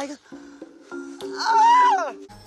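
Background music with steady held notes, then, about a second and a half in, a woman's high-pitched, drawn-out scream, the loudest sound here.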